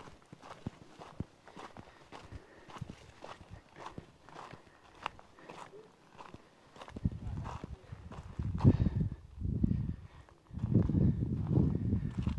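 Footsteps on a rocky dirt track, two or three steps a second. From about seven seconds in, gusts of wind buffet the microphone with a loud, uneven rumble that drowns out the steps.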